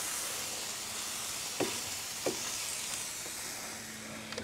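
Raw chicken wings sizzling as they are laid into the hot air-fryer basket of a Ninja Foodi Max grill, searing on contact: a steady hiss with a couple of soft taps as pieces go in, easing slightly near the end.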